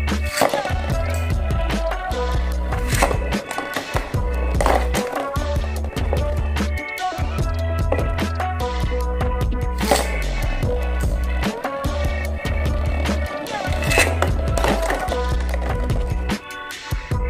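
Background music with a steady bass beat, over the scraping whir and sharp clacks of Beyblade tops spinning and colliding on a plastic arena floor.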